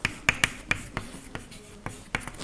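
Chalk writing a word on a blackboard: a string of sharp taps with short scratches between them as the chalk strokes hit and drag across the board.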